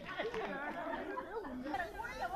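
Quiet chatter of people talking, with no single voice standing out.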